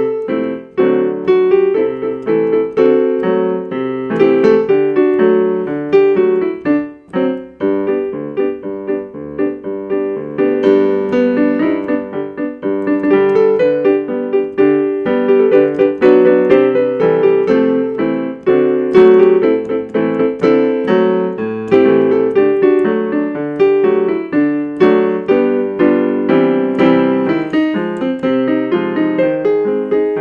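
Electric keyboard in a piano voice, played solo: an instrumental TV theme tune with melody and chords over a halftime march beat.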